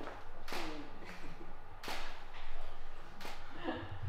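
Camera shutter firing three times, each a sharp click about a second and a half apart.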